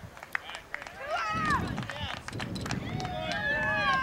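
Several overlapping voices shouting and calling at a youth baseball game, starting about a second in and growing louder toward the end, with no clear words.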